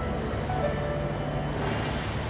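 Last notes of a grand piano dying away, with one soft note about half a second in, over the steady background noise of a busy railway station hall.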